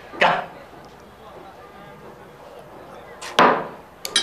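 A short spoken word at the start, then low room tone, and a single sharp knock about three and a half seconds in: a small porcelain wine cup set down on the dinner table after a toast.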